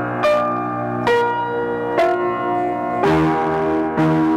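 Upright piano played in slow chords, a new chord struck about once a second and each left ringing.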